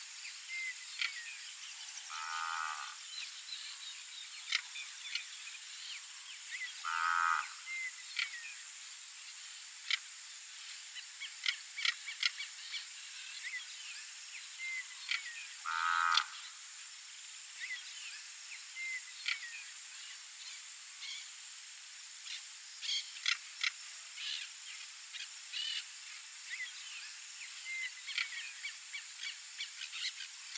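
Red-winged tinamou giving three separate whistled calls, about two, seven and sixteen seconds in. Under them run a steady high hiss and many short, faint chirps and ticks.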